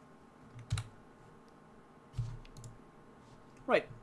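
A few computer keyboard key presses: a sharp click about three-quarters of a second in and a duller knock with a couple of lighter clicks around two seconds in, as a Python script is saved and run. A brief vocal sound comes just before the end.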